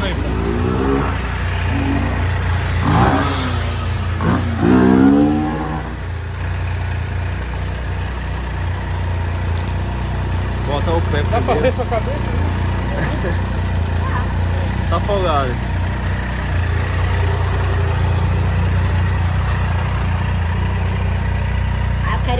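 Triumph Tiger three-cylinder motorcycle engine idling steadily. Voices rise over it in the first few seconds and again around the middle.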